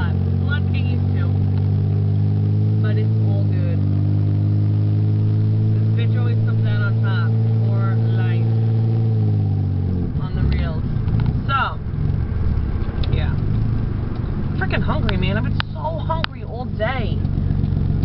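Car engine and road noise heard from inside the cabin. The engine drones steadily, rising a little in pitch twice in the first half, then drops off about halfway through, leaving a rougher rumble.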